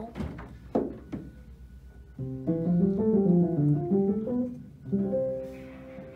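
Knabe 47-inch studio upright piano played with its middle-pedal practice mute engaged, a felt strip damping the strings for quiet practice. A short phrase of notes begins about two seconds in and ends on a held chord.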